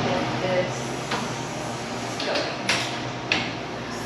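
Steady hiss and low hum of brewhouse equipment, with several short, sharp metallic clicks as a valve on a stainless brewing tank is worked.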